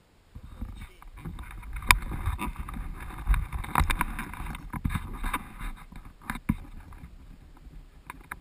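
Handling noise from a helmet-mounted action camera as the motocross helmet is pulled on and worn: muffled rubbing and scraping with irregular knocks and taps, the sharpest about two seconds in, easing near the end.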